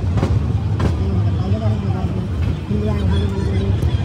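Moving passenger train heard from inside the coach: a steady low rumble of the running train, with two sharp clicks in the first second, likely the wheels over rail joints. Passengers' voices murmur faintly underneath.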